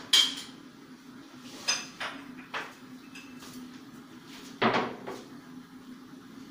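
Kitchen pots and cups clattering as they are handled at a stove and counter. There are a few sharp clinks and knocks: the first rings briefly, and another loud knock comes about five seconds in.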